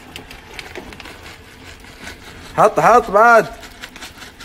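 Faint scraping and light clicks of a utensil working through cooked penne in a stainless steel pot, then a loud, drawn-out vocal sound from a person about two and a half seconds in.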